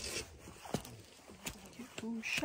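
Faint clothing rustle and a few light knocks and scuffs as a person climbs out of a car onto a dirt ground.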